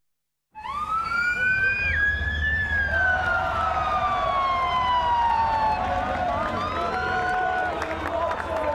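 A siren wailing, rising for about two seconds and then falling slowly, with shorter glides over it, above the noise of a street crowd and a low steady rumble. It starts suddenly half a second in.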